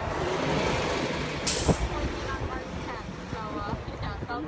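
Street traffic going by, a steady rumble with one short, sharp hiss about a second and a half in. Voices murmur faintly in the second half.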